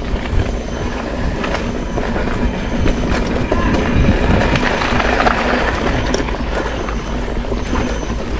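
Mountain bike ridden over a rough dirt trail: a continuous rattle of the bike and camera mount with many small knocks, tyre and ground noise, and wind rumbling on the action-camera microphone.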